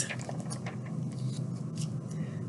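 A page of a picture book being turned by hand: a few faint, brief paper rustles and light clicks.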